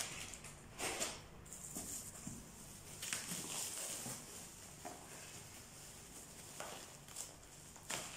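Plastic bubble wrap rustling and crinkling as it is pulled off a cardboard box, in faint irregular bursts.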